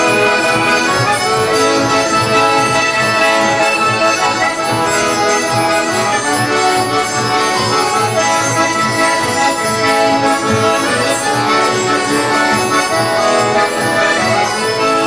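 Live traditional folk dance tune played on accordion and acoustic guitars, a steady instrumental melody over an even rhythmic bass beat.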